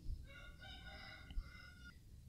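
A faint rooster crow: one long call of about a second and a half.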